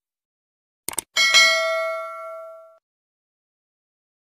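Subscribe-animation sound effect: two quick mouse clicks, then a bell ding that rings out and fades over about a second and a half.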